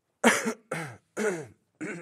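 A man laughing in four short, breathy bursts, each falling in pitch.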